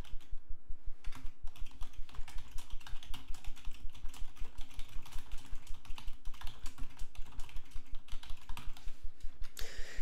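Typing on a computer keyboard: a steady run of quick, even keystrokes at about six a second, a sentence typed out without a break.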